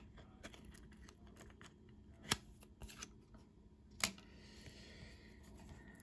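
A trading card being worked out of a clear plastic holder: faint plastic rubbing and ticking, with two sharp clicks about two seconds and four seconds in.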